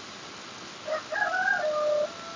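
A recorded voice from an Android Iqro app, pronouncing an Arabic letter sound. It starts about a second in and draws the vowel out long on one steady pitch.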